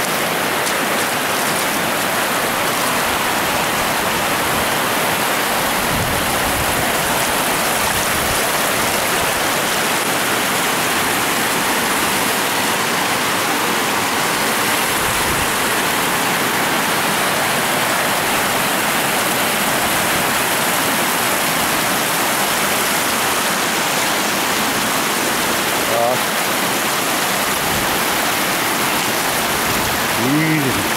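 Shallow river rapids: water rushing steadily over broad, flat bedrock shoals.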